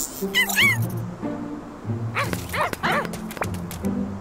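Cartoon robot puppy barking in short, high yaps: two about half a second in, then three quick ones between two and three seconds, over background music. A few sharp clicks follow near the end.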